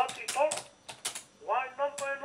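Keystrokes on a computer keyboard: a handful of sharp, unevenly spaced key clicks.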